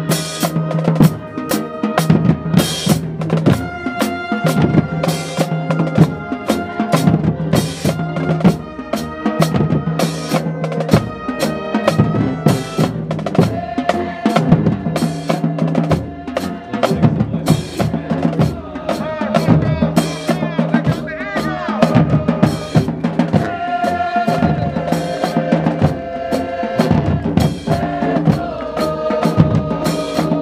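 Marching band playing a tune in the stands: brass horns and sousaphone over a drumline of bass and snare drums keeping a steady beat.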